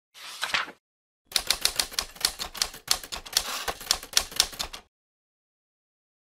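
Typewriter keys clacking in a quick, irregular run for about three and a half seconds, after a brief burst of noise at the very start.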